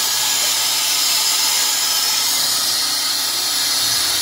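Steady, high-pitched whir and hiss of running machinery.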